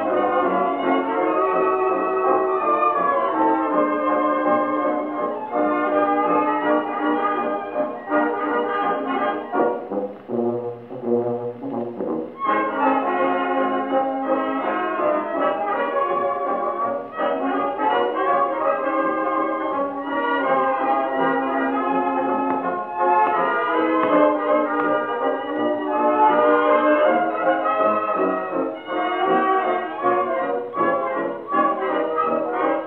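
A 1925 Victor 78 rpm shellac record of a dance orchestra playing a fox trot, with the brass leading, played acoustically on an EMG Mark Xb oversize-horn gramophone with a Meltrope III soundbox. The sound is narrow, with no deep bass and no high treble, and the band thins briefly about ten seconds in.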